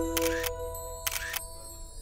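Two camera shutter clicks about a second apart as a group photo is taken, over soft background music that fades away.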